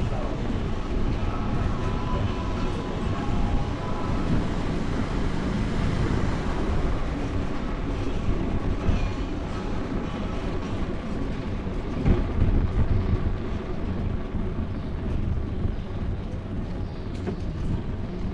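Steady low rumble of wind and riding vibration on a bicycle-mounted action camera rolling along tiled pavement, with a single bump about twelve seconds in.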